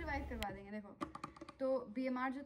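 A woman's voice, drawn out and untranscribed, with a short run of light clicks about a second in.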